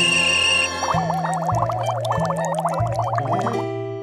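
Cartoon music score with a comic warbling, gargle-like vocal sound effect: a high held note at the start, then a fast-wavering, burbling line from about a second in until shortly before the end, over a stepping bass line.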